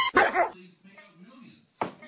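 A dog barks briefly right at the start, then things go quiet; a short, sudden louder sound comes just before the end.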